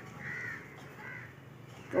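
Crow cawing twice: a short harsh call about half a second in and a fainter one just after a second.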